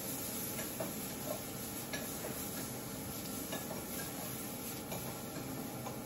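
Zucchini slices sizzling in a pan on the stove, with a few light clicks as a utensil turns them over. They are cooking unevenly, some parts starting to burn.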